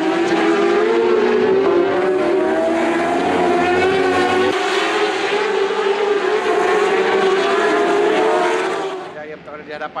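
Racing superbike engine running at high revs, a loud steady howl whose pitch wavers slightly and which drops away about nine seconds in.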